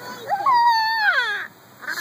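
A young child's loud, high-pitched drawn-out squeal that slides downward in pitch over about a second, followed near the end by the start of a spoken word.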